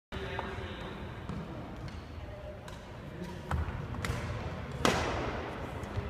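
Badminton racket hitting a shuttlecock in a large echoing gym hall: scattered faint sharp hits, then one loud crisp hit a little before the end, over a murmur of voices.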